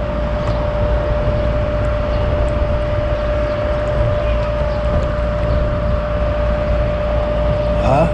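Steady low engine rumble with a constant humming tone over it, the level even throughout.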